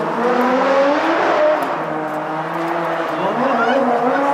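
Car engines running at the same time at different pitches, with one revving up in a steep rising climb near the end; voices over them.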